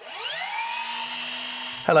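A transition sound effect over the show's title card: a whine that rises in pitch over about half a second, then holds steady until it cuts off near the end, just as a voice begins.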